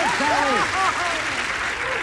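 Studio audience applauding and cheering, with several excited voices calling out over the clapping, greeting a correct answer on a TV game show.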